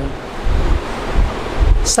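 Moving air hitting the microphone: a steady rush with low rumbling buffets.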